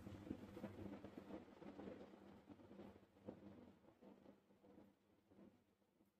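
Near silence: faint room tone with a few soft ticks from small hand movements in the first two seconds and one more near the middle.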